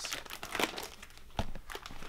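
Plastic photo-album sleeves crinkling and rustling as album pages are turned by hand, with a sharp tap about one and a half seconds in.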